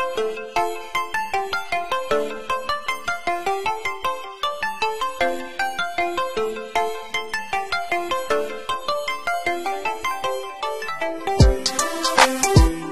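Electronic beat playing back: a quick, repeating melody of short synth pluck notes with no bass under it, until a deep bass hit comes in near the end.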